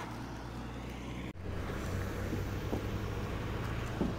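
Low, steady hum of open-air background, then, after an abrupt cut about a second in, the steady low drone of a coach bus's engine heard from inside the bus.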